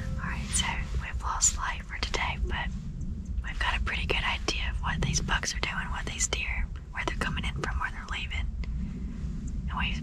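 A woman whispering in short phrases, with pauses, over a low steady rumble.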